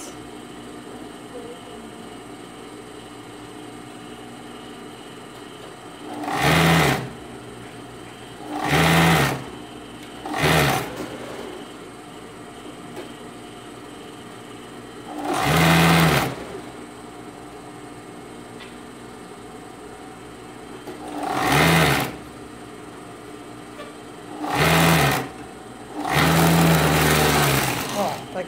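Siruba industrial overlock machine (serger) stitching plush trim onto a knit Santa hat in seven short bursts, the longest near the end. A steady hum runs underneath between the bursts.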